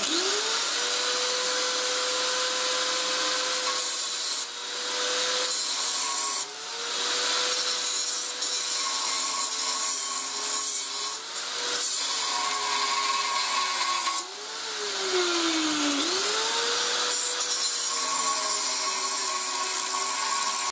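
Electric angle grinder spinning up and cutting into the rusted steel bushing ring of a car's rear axle beam, with the grinding hiss of the disc on metal. The motor's whine drops in pitch each time the disc bites, most deeply near three-quarters of the way through, then picks back up.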